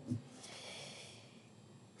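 A man draws a faint breath at a close microphone in a pause between sentences, a soft hiss that fades out after about a second, leaving low room tone.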